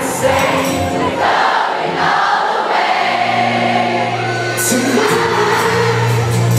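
Live pop music with singing, recorded from within the audience of a large concert hall, with many voices singing along like a choir.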